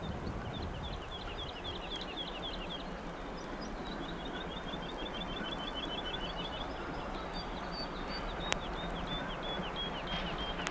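A songbird singing repeated quick, high chirping phrases, with a fast run of evenly spaced notes about four to six seconds in, over a steady low rumble from the distant steam train working towards the camera. A single sharp click about eight and a half seconds in.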